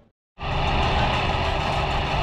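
Steady street traffic noise with vehicle engines running close by. It starts abruptly after a moment of silence.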